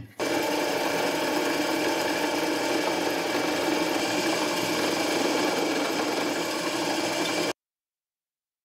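Drill press running, its bit drilling into a stack of mild steel plates, a steady machine noise that cuts off suddenly near the end.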